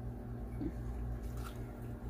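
Salsa poured from a ladle onto a plate of chips, a few faint soft wet sounds over a steady low hum.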